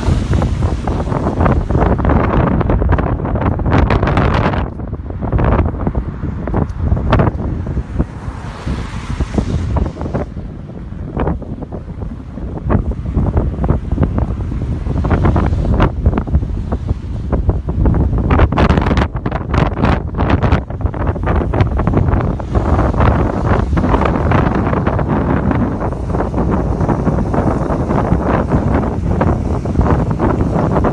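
Wind buffeting the microphone: a loud, irregular rumbling roar that surges and dips in gusts.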